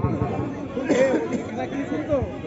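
Spectators' chatter: several voices talking and calling out at once, none standing out.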